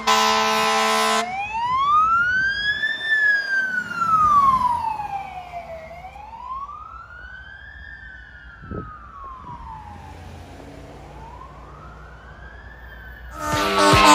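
Fire rescue truck's siren in a slow wail, rising and falling about every five seconds and growing fainter as the truck drives away, after a short steady horn blast right at the start.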